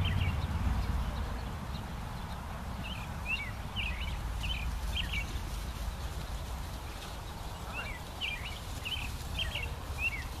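A songbird singing short, quick chirping phrases in two runs, a few seconds in and again near the end, over a low steady rumble.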